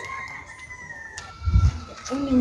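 A rooster crowing: one long drawn-out call that steps down to a lower pitch partway through. A low thud comes near the end.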